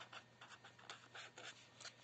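Felt-tip marker writing on paper: a run of short, faint strokes as a word is written out.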